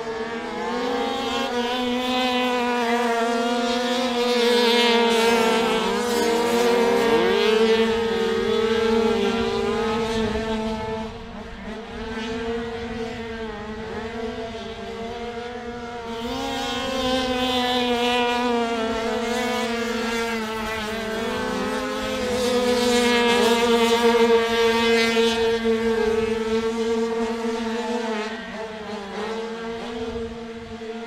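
Several 85cc two-stroke speedway motorcycles racing on a dirt oval, their engines rising and falling in pitch as the riders shut off and open up through the corners. The sound swells loudest twice as the pack comes past, a few seconds in and again past the middle.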